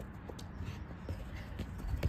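A football being dribbled on artificial turf with quick right-foot touches, mixed with the player's footsteps: a run of light, soft taps, about three a second.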